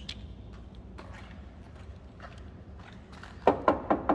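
Knuckles rapping several times in quick succession on the steel lower body panel of a 1984 Dodge D150 pickup, starting about three and a half seconds in, over a low steady hum. The knocking tests that the rust-spotted metal is solid.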